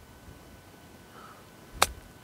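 A single sharp click of a 60-degree wedge striking a golf ball, near the end.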